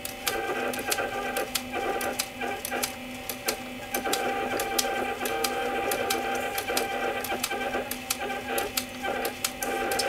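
Small hobby metal-turning lathe running slowly under power while winding copper wire onto a coil bobbin: a steady motor hum with many irregular ticking clicks, a little louder from about four seconds in.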